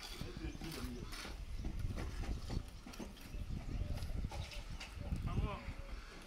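Building-site noise: irregular knocks and clatter over a low rumble, with a voice heard briefly about five seconds in.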